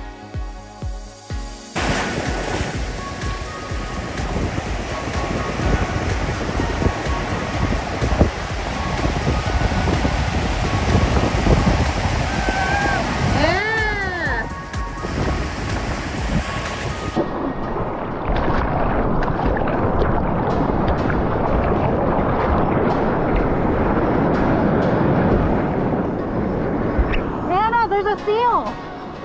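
Ocean surf breaking and rushing, with wind noise on the microphone, after a short stretch of electronic music at the start. A short rising-and-falling vocal whoop cuts through the surf about halfway through, and another comes right at the end.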